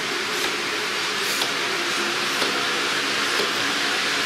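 Steady background noise of a busy store: a constant hiss with faint far-off voices and a few light clicks.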